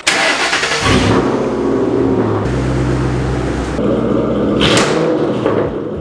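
Ford Mustang GT's 4.6-litre three-valve V8 starting through a straight-piped exhaust: a brief crank, then the engine catches about a second in and runs. It is revved once, about four to five seconds in.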